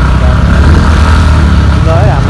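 A motor vehicle's engine and road noise heard while riding along, a steady low drone.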